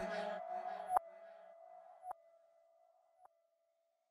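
The end of an electronic dance track. The full mix has just stopped, leaving a fading echo and a single faint held high note, with a faint click about once a second over the first three seconds.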